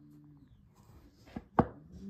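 A low steady hum that stops shortly after the start, then two sharp knocks close together about a second and a half in, the second much louder, and another low hum starting near the end.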